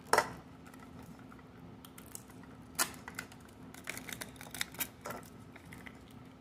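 Hands handling small plastic toy packaging and capsule pieces on a table. A sharp knock comes right at the start, a click about three seconds in, and then a quick run of light clicks and crinkles.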